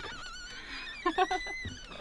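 An animal's high-pitched, wavering whining cries: one short cry at the start, then a run of short cries ending in a long high note about a second in.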